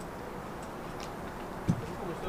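Steady background room noise with a faint click about a second in and a single dull thump near the end.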